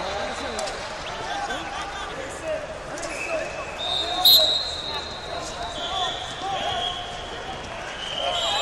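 Spectator chatter and calls filling a large gym hall, with steady high-pitched whistle tones from other mats. The loudest is a short sharp whistle blast about four seconds in.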